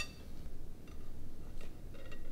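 Quiet, steady low room hum with a couple of faint soft clicks about a second in and again near the end.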